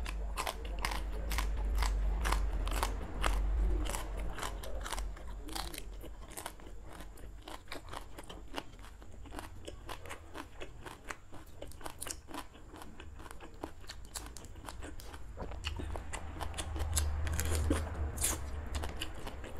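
Close-up crunching and chewing of raw water spinach stalks: crisp snapping crunches come thick and fast in the first several seconds, thin out to softer chewing in the middle, and pick up again near the end.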